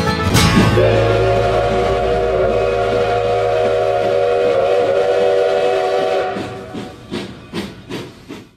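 Steam locomotive whistle: one long chime blast of several held tones lasting about five seconds, over a hiss, starting just after a bluegrass tune ends. It fades away with a few short sharp sounds near the end.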